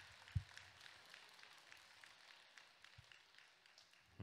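Faint, scattered audience applause, with a single low thump about half a second in.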